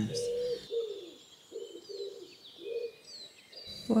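A pigeon cooing in a short run of low, repeated notes, with faint high chirps of small birds over it.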